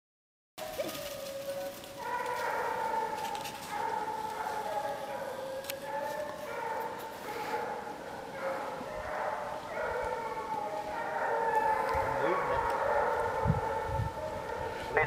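A pack of Penn-Marydel foxhounds baying together, many long, overlapping voices held for a second or more at a time, starting about half a second in.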